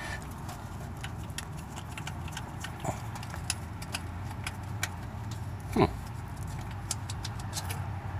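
Light, scattered clicks and scrapes of a small screwdriver probing the rust- and sludge-clogged coolant drain hole of a Chevrolet 350 V8 engine block, over a steady low hum. About six seconds in, a short sound falls in pitch.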